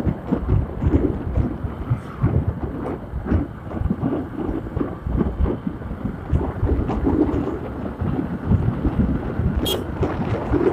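Wind buffeting the microphone of a moving motorbike: a gusty, uneven rumble over the bike's running and road noise, with one short sharp click near the end.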